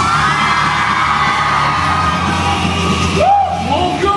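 Live pop song played loud over a PA system: a steady backing track with a voice holding long, gliding notes over it, and a short swoop up and down near the end, amid yelling from the crowd.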